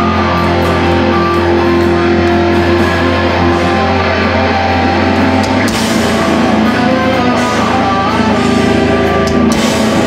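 Live metalcore band playing at full volume: distorted electric guitars hold a low droning chord, then the band hits in together about halfway through with a loud, chopping riff and cymbal crashes.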